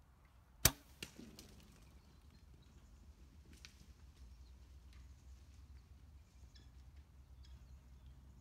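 A Hoyt Pro Defiant compound bow is shot: one loud, sharp snap of the string about half a second in. A fainter crack follows a split second later, the arrow striking. After that only faint scattered ticks are heard.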